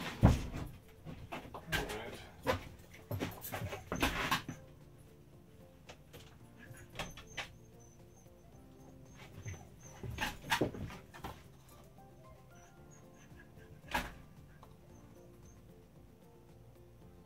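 A dog whimpering and moving about in the first few seconds, then a few scattered knocks over faint background music.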